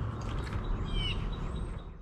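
A bird calling, one short falling call about a second in, over a steady low rumble; the sound fades out at the end.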